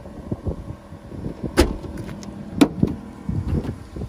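A car's trunk being shut, heard as two sharp knocks about a second apart, the second a little after the middle. Underneath, the 2004 Mazda3's 1.6-litre four-cylinder engine idles steadily.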